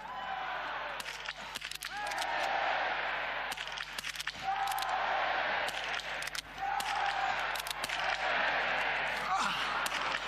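Small-bore biathlon rifles firing in prone position, sharp shots at irregular intervals from several shooters at once, over a crowd of spectators cheering and calling out.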